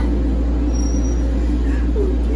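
A steady low hum with a faint even background noise underneath; nothing starts or stops.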